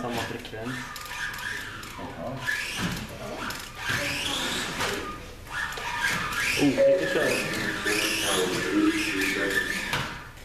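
Voices talking, with the high whine of Kyosho Mini-Z RC cars' small electric motors rising and falling again and again as the cars speed up and slow down.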